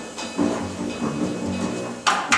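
Live acoustic jazz from the rhythm section: double bass, piano and drum kit playing, with the saxophone silent.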